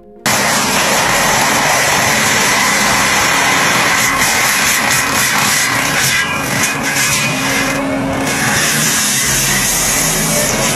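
Tracked forestry mulcher grinding standing tree trunks into chips with its spinning toothed drum, its engine running under heavy load. A loud, dense, steady grinding noise that starts abruptly.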